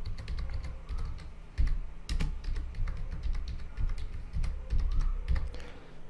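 Computer keyboard being typed on: a run of quick, irregular key clicks as a search term is typed in.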